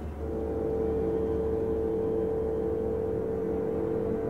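Orchestra in a slow passage: one note held steady from just after the start, over low sustained tones.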